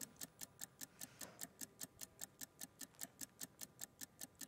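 Countdown-clock ticking sound effect: faint, rapid, even ticks at about six a second, marking a one-minute sales countdown.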